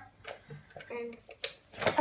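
Low handling noise with two sharp clicks in the second half, as a plug is pushed into a step-down transformer box, with a few faint murmured words.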